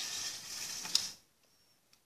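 Lego plastic parts rattling and scraping as a hand moves them on the model, lasting about a second and ending in a sharp click.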